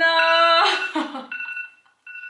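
A girl's drawn-out shout of "No!", then a timer alarm starting about a second in, beeping in short repeated high tones as the countdown runs out.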